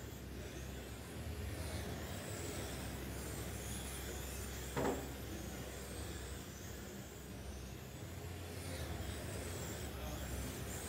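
Electric 1/10-scale RC touring cars lapping a carpet track in a large hall: a faint high motor whine rising and falling as the cars pass, over a steady hum. A brief sharp sound about halfway through.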